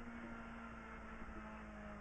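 Opel Adam R2 rally car's engine running steadily and quietly, heard from inside the cabin as the car cruises past the stage finish.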